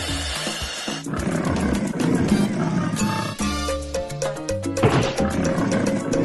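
Soundtrack music with a cartoon monster's roar over it. The roar comes in about a second in and rises again near the end.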